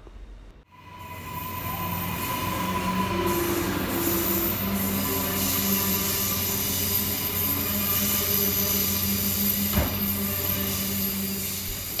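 Electric passenger train running past, a steady rumble of wheels on rails with thin squealing and whining tones held over it. It fades in about a second in, then holds steady, with one short knock near the end.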